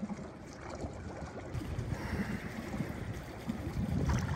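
Water lapping and sloshing at the pool surface close to the microphone, with gusty wind rumble on the microphone.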